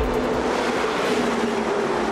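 A heavy military truck hauling armour drives past, its engine and tyre noise growing to a peak about a second in and then easing.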